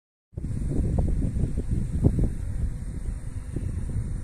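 Wind buffeting the microphone in a low, rough rumble, mixed with car noise, starting after a split second of silence.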